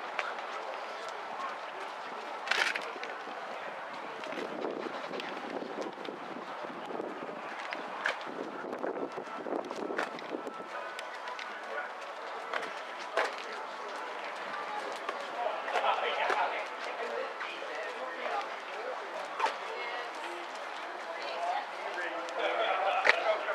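Indistinct chatter of people talking in the background over a steady murmur, a little clearer about two-thirds of the way through, with a few short knocks and clicks scattered through.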